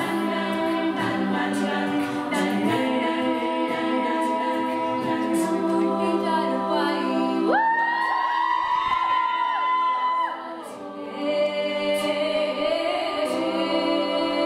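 All-female a cappella group singing a Bollywood-song medley in close harmony, with no instruments. About halfway through the lower voices drop away and one high voice holds a long wavering note; after a brief dip the full harmony returns.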